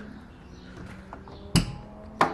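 A single sharp knock about one and a half seconds in, over a faint steady low hum.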